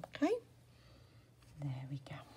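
A woman's voice speaking softly, half under her breath: a short sound rising in pitch just after the start and another murmur near the end.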